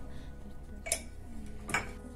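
Two short, sharp clicks about a second apart over a faint low room hum.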